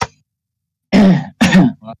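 A man clearing his throat: two short bursts about half a second apart, after a brief click.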